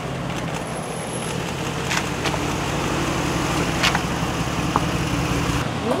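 Idling SUV engines with steady traffic noise, and a few sharp clicks over it. The sound changes abruptly near the end.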